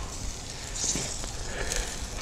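Quiet pause with faint outdoor background noise and a low rumble, no distinct event.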